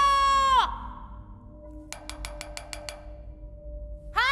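A girl's long, loud shout held on one pitch ends about half a second in. About two seconds in comes a quick run of seven sharp clicks.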